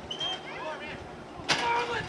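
Voices calling out, with a sharp knock about one and a half seconds in followed by a held, raised voice.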